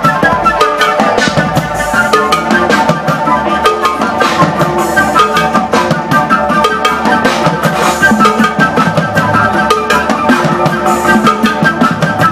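Live music from a flute and a drum kit: a quick run of pitched notes over a steady drum beat.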